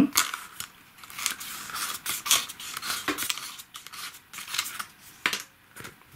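Glossy photo cards and their paper band being handled: a run of short, crisp rustles and scrapes of card and paper, with one sharper snap a little after five seconds.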